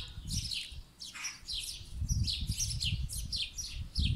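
Small birds chirping rapidly and repeatedly, each chirp a short high note sliding downward, over a low rumble on the microphone.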